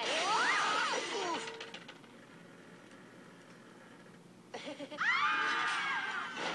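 Film soundtrack heard through a screen's speakers: a shouted 'Oh!' in the first second or so, a quiet pause of about three seconds, then several people screaming in panic near the end.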